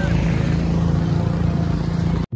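Steady drone of a motor vehicle engine, with a noisy rush over it.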